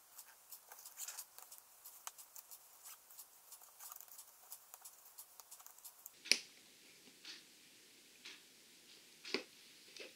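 Hands stretching and wrapping self-fusing repair tape around a small adapter ring: faint quick crackles for about six seconds, then a sharp tap and a few lighter knocks as the ring is handled.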